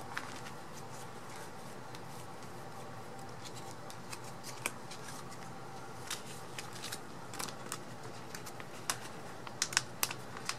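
Photocards being slid into plastic binder sleeve pockets and the plastic pages handled: faint, scattered rustles, crinkles and small clicks.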